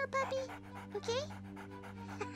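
A performer's voice making puppy noises: short squeaky calls, with rising-pitch ones near the start and about a second in. Soft background music with held notes plays underneath.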